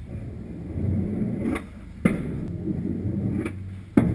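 Skateboard wheels rolling on concrete, a low rumble, with a sharp clack of the board about two seconds in and another near the end.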